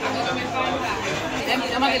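Speech only: chatter of voices in a busy dining room, with a woman starting to speak near the end.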